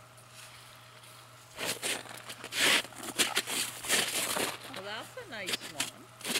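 Irregular crunching and scraping on crusty, snow-covered ice, starting about a second and a half in, as a landed walleye is grabbed and lifted off the ice. A short murmur of a voice near the end.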